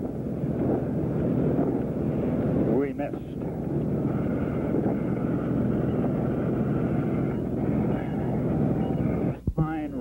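Steady drone of a light aircraft's engine and airflow heard inside the cabin, with a few sharp clicks and dropouts near the end.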